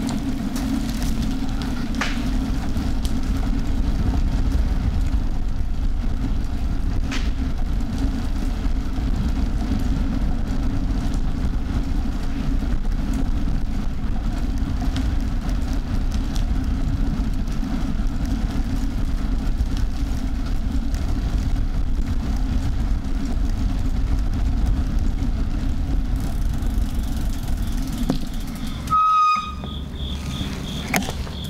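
Steady low rumble of riding noise picked up by a bicycle-mounted recorder: tyres on the road and vibration, at an even level throughout. A short high beep sounds near the end.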